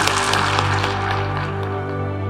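Audience applauding, the clapping fading away about a second and a half in, over music of long held low tones that carries on alone.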